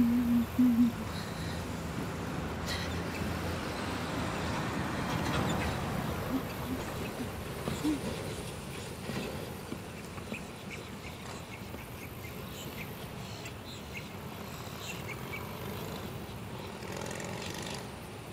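Steady outdoor background noise with a few faint ticks, and brief voice sounds in the first second.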